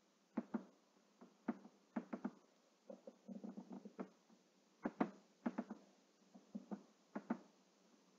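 Faint computer mouse button clicks, many in quick press-and-release pairs, with a brief run of lighter ticks near the middle.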